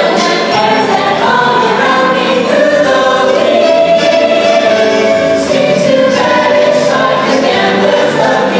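A mixed show choir of male and female voices singing together in parts over music, holding long notes.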